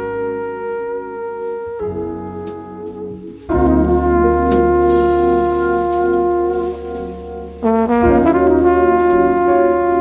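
Jazz trumpet playing long held melody notes over a band. The music gets louder about three and a half seconds in, and again near eight seconds.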